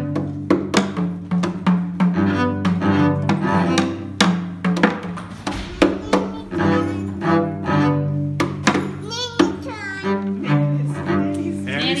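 Lollipop hand drums tapped with beaters in quick, irregular strikes, over a sustained low-pitched instrumental accompaniment.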